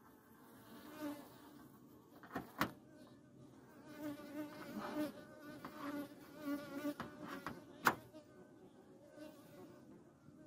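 Honeybees buzzing faintly as they cluster on a dead European hornet, the buzz swelling and fading. Three sharp clicks cut through it, two close together a little over two seconds in and a louder one near the end.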